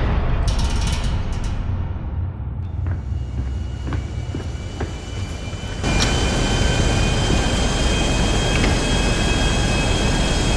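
A loud engine runs steadily with a deep rumble, muffled at first. About six seconds in, as a door opens, it becomes louder and clearer, with a steady high whine over it.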